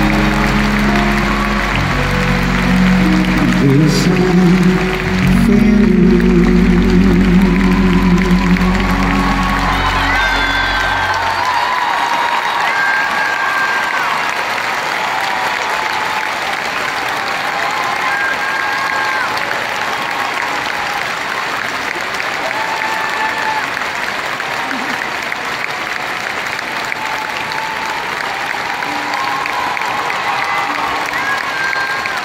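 A live band holds the closing chords of the song, which stop about eleven seconds in. An arena audience applauds through the ending and keeps applauding and cheering after the music stops.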